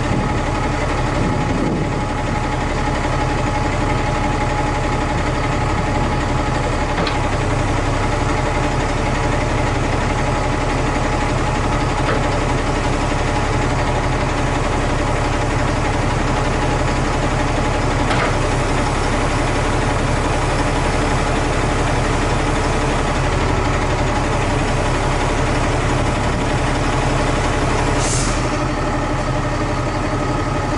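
Lorry diesel engine idling steadily while the truck-mounted crane's boom is worked, with a few faint clicks and a short hiss near the end.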